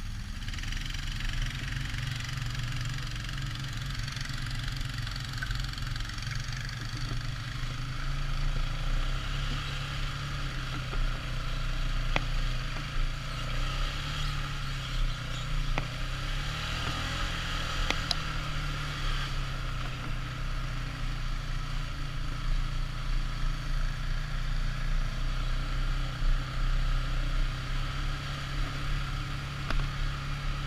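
ATV engine running steadily under way, its pitch wavering a little with the throttle, with a hiss of travel noise over it. A few sharp knocks come through around the middle.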